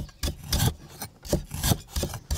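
Cleaver chopping on a round wooden chopping block: about five uneven knocks, each with a rasping scrape of the blade on the wood.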